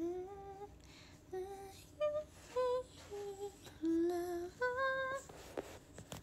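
A woman humming a short tune with her lips closed: a string of separate held notes stepping up and down, with short pauses between them.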